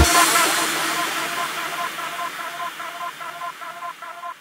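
Psychedelic trance track at its outro: the kick drum and bassline cut out at the start, leaving a fading wash of reverb noise and a repeating synth pattern pulsing about four times a second that grows steadily quieter.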